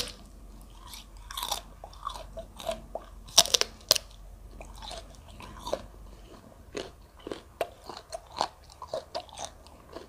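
Close-miked bites into a raw prickly pear cactus pad, giving crisp, juicy crunches; the sharpest come about three and a half to four seconds in. Wet chewing with smaller clicks follows.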